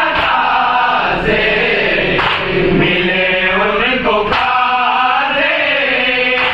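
A group of men chanting an Urdu salam (devotional poem) together in a slow, melodic unison recitation.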